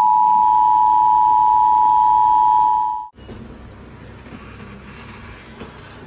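A loud, steady two-tone emergency-broadcast alert signal that cuts off abruptly about three seconds in, leaving a faint low rumble.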